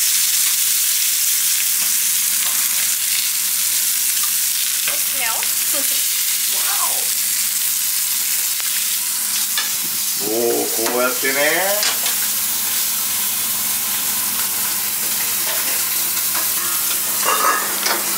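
Two meat chops frying in oil in a stainless steel pan: a steady, loud sizzle.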